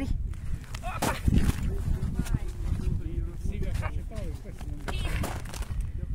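A lift net hauled up through an ice hole by its rope, hand over hand, with boots shifting on snow and a few sharp knocks about a second in, over a steady low rumble. Brief wordless voice sounds come in the middle.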